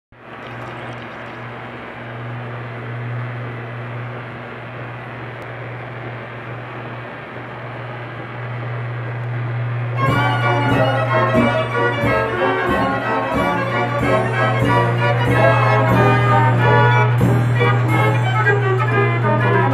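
A steady low hum for the first half, then the Wurlitzer Orchestrion starts playing about ten seconds in: piano with organ-like pipes and drum strokes, loud and rhythmic.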